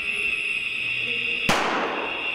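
A steady, high-pitched alarm tone sounds throughout, and a single gunshot cracks about a second and a half in, its echo dying away down the hallway.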